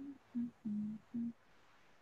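Someone humming four short notes of a little tune, stepping down in pitch and back up a little. The third note is the longest.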